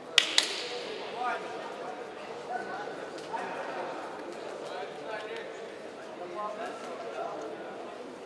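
Two sharp claps about a fifth of a second apart, echoing in a large hall.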